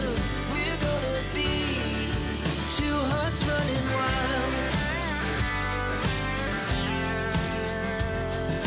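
Background pop song with a steady beat and a gliding melody line.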